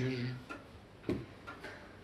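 A man's voice trailing off, then a quiet room with a few faint short ticks, the clearest about a second in.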